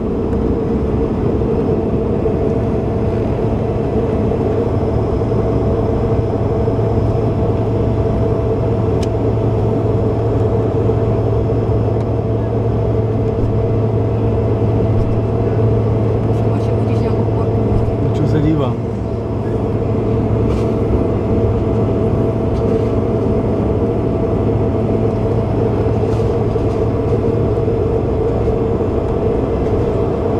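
Aircraft cabin noise in flight: a steady engine hum with a few constant tones over a loud rush of air, unchanging throughout.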